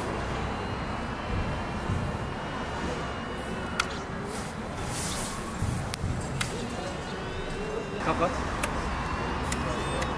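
Outdoor background: a low steady rumble with faint voices and a few sharp clicks. No model-plane engine or motor is running.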